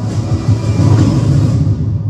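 A loud cinematic title-sting sound effect from a TV show's opening: a deep bass rumble with a rushing hiss over it, which begins to fade near the end as the show's logo is revealed.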